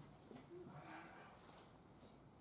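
Near silence with faint, distant voices talking briefly in the first second.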